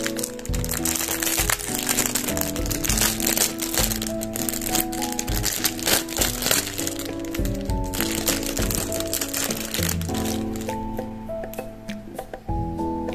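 Thin clear plastic bag crinkling as it is handled and pulled open, over background music. The crinkling thins out near the end as the item comes free.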